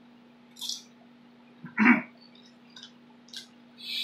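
Crunching and chewing a Doritos tortilla chip: a few short crisp crunches and mouth noises, the loudest about two seconds in, over a faint steady hum.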